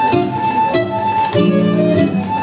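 Bandoneon and acoustic guitar playing tango as a duo. The bandoneon's reeds sustain a melody line over plucked guitar chords, with a fuller bandoneon chord held from about one and a half seconds in.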